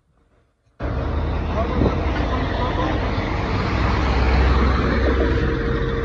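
Loud, steady road traffic noise with a deep rumble, starting suddenly about a second in.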